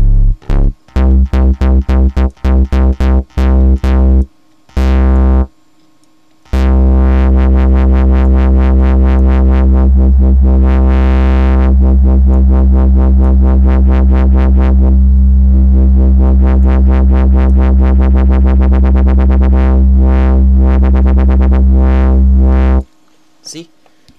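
Wobble bass from the Harmless software synth in FL Studio. A string of short bass stabs, about four a second, is followed by one long held low note whose filter is swept by an LFO. The wobble speeds up steadily as the LFO rate is turned up, and the note cuts off suddenly near the end.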